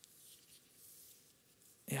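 Faint rustling in a quiet room, then a man's voice starts again near the end.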